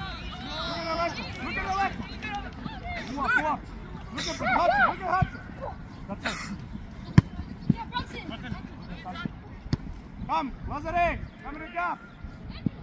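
Voices shouting and calling out across a soccer field, with several sharp thuds of a soccer ball being kicked on turf, the loudest just after seven seconds in.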